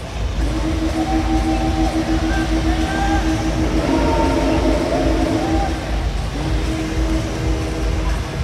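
Bajaj Pulsar stunt motorcycle's engine held at high revs through a wheelie, a loud steady drone. It drops briefly about six seconds in and then picks back up.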